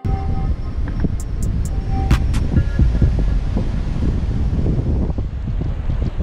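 Wind buffeting a camera microphone carried on a moving electric unicycle: a loud, steady low rumble.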